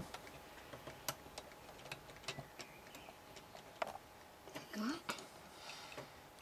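Faint, irregular clicks and taps of plastic LEGO parts as the crane and crate of a LEGO Sandcrawler model are handled, with a brief voice sound about five seconds in.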